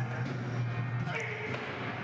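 Background music with a steady low hum and a few sustained pitched notes.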